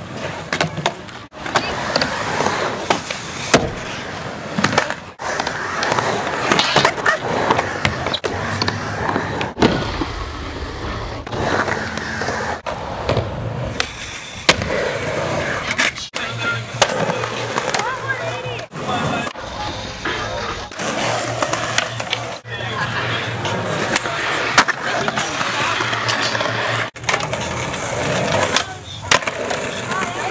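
Skateboard wheels rolling on concrete, with sharp board clacks and landings, in a series of short clips that cut off abruptly one after another.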